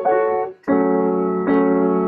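Sustained chords played on a keyboard, each held steadily. The first stops about half a second in, and a new chord enters, changing again near the end. They show held chords sounding under a melody.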